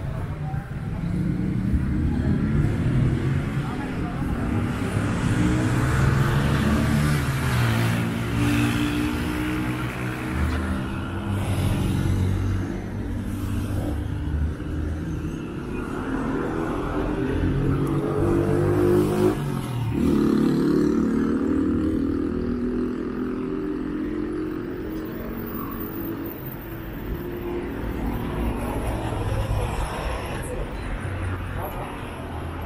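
Street traffic on a busy multi-lane road: car engines passing, several of them accelerating with rising pitch, the strongest passes in the first half and again just past the middle.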